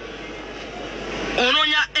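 Steady rushing vehicle noise that swells slightly for about a second before a man's voice comes back in.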